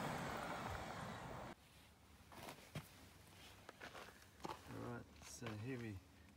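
Polaris Ranger EV electric utility vehicle driving off on a dirt track, its sound fading away until it cuts off abruptly about one and a half seconds in. After that, a few faint clicks, then a man starting to speak near the end.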